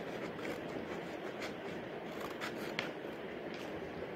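Scissors cutting through a paper blind bag: a few faint, short snips over a steady background hiss.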